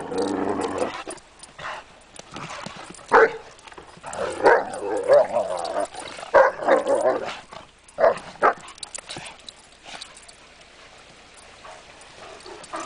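Two Irish wolfhounds play-fighting: drawn-out growling calls broken by short sharp barks, which fade to quiet over the last few seconds.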